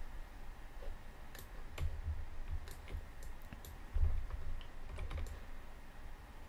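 Scattered, irregular clicks of a computer mouse and keyboard, with a few low, dull thumps at about two, four and five seconds in.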